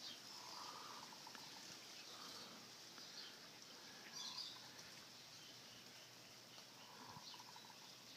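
Near silence: faint outdoor background, with a few faint chirps about half a second in, around four seconds in, and near the end.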